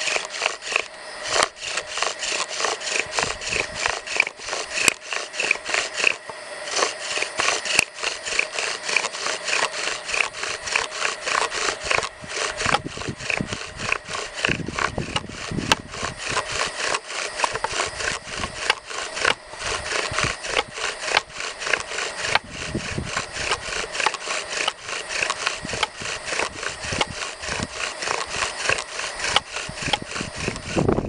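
Bow drill spinning a willow spindle in a notched willow hearth board: a steady, rhythmic dry rubbing and squeaking that pulses with each back-and-forth stroke of the bow, a few strokes a second. This is the drilling stage of making a friction-fire ember.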